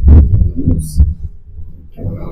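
Heavy low thumps and rumbling, loudest just after the start and again about a second in, with faint fragments of a woman's voice.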